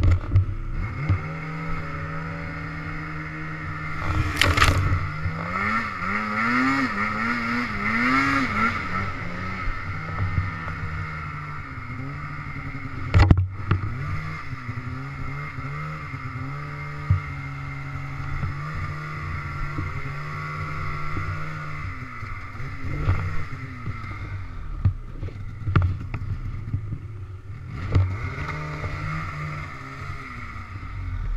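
Snowmobile engine pushing through deep powder while breaking trail, revving up and down in several short surges a few seconds in, then running steadier. A sharp knock sounds near the middle, with a few smaller thumps later.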